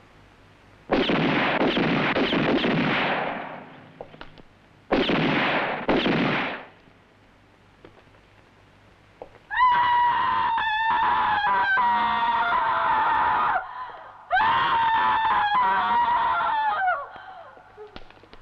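Screaming: two harsh, rasping cries, then two long high wails that slide slowly down in pitch.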